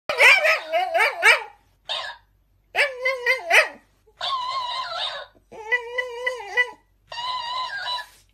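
Shiba Inu making whining, howl-like vocalisations in short bursts, each answered by a mimicking plush toy that plays the sound back at a higher pitch, six bursts in all.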